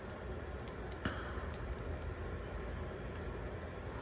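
Steady low room hum with a few faint, short clicks, the clearest about a second in, as hands handle and position a jointed action figure.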